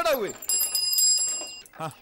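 A voice speaking, with a high-pitched ringing of rapid metallic strikes, like a small bell, for about a second in the middle.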